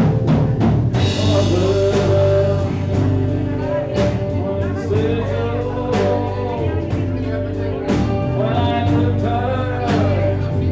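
Live blues band playing a slow blues on electric and acoustic guitars, electric bass and drum kit, with a steady drum beat. Over it runs a lead line of long held notes that bend up and down.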